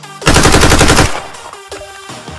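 Animated Walther MPL submachine gun firing one rapid fully automatic burst of under a second, starting about a quarter second in, over background music.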